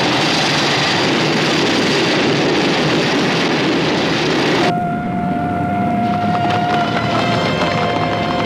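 Film trailer soundtrack: a dense rushing wash of battle sound effects, cut off sharply about four and a half seconds in by orchestral music with a long held high note.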